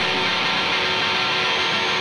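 Live rock band playing through a festival PA: electric guitar in a steady, dense wash of sound with no vocal over it.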